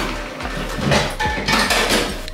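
Dishes being washed by hand at a kitchen sink: plates and cutlery clinking and knocking together several times.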